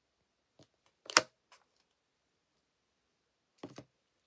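A stamp on its block being lifted off the card and set down. It makes a few small clicks and taps, the sharpest about a second in, with near quiet between them.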